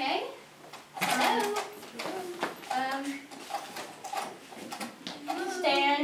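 Children's voices speaking and calling out indistinctly in a room, with a light knock or two.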